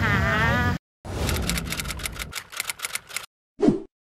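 Intro sound effect for a logo card: a run of rapid clicks over a hiss, thinning out over about two seconds, followed by a short lower-pitched blip near the end, after a woman's voice breaks off suddenly.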